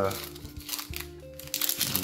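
Crinkling and rustling of a trading-card booster pack and its cards being handled, in two short spells, over faint background music with held notes.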